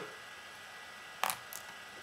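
Quiet room tone with a faint steady mains hum, broken by one brief sharp click about a second in and a fainter one just after.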